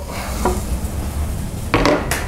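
Chopped vegetables (carrot, leek, onion and garlic) sizzling as they are tipped from a cutting board into hot olive oil in a saucepan, with a light knock about half a second in.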